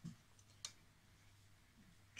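Near silence with one faint, sharp click about two-thirds of a second in and a couple of fainter ticks just before it: the pen being handled against the paper.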